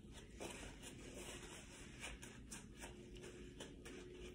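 Faint rustling and rubbing of a paper towel wiped over gloved hands, in short scratchy strokes.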